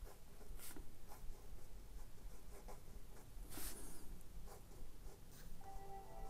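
A pen scratching across paper in cursive handwriting: faint, uneven strokes, the loudest scratch about three and a half seconds in. A few steady musical tones start just before the end.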